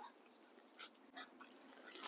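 Near silence: room tone, with a few faint short sounds in the middle.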